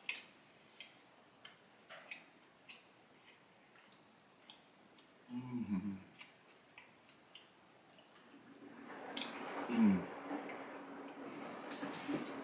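A person chewing a mouthful of a Cuban sandwich, with small wet mouth clicks and two brief hummed "mm" sounds of enjoyment, about halfway and near the end. In the last few seconds a laundry machine's steady hum and hiss rises in the background.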